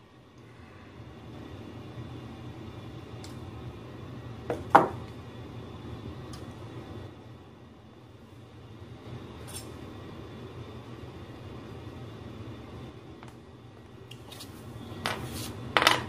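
Scattered light clinks and taps from hand work on a guitar amp's capacitor board and metal chassis: a few separate small strikes, the loudest a sharp, ringing clink about five seconds in, and a cluster near the end, over a steady low background hum.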